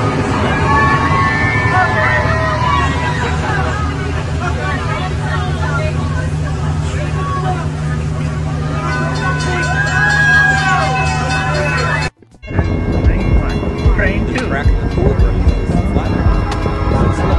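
Brightline passenger train running steadily past, with the low hum of its diesel locomotive under the voices of a crowd of onlookers. About twelve seconds in the sound cuts off suddenly and music with a beat takes over.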